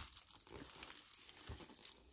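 Faint crinkling and rustling as a soft vegan-leather clutch and the white packing stuffing inside it are handled, a little louder at the start.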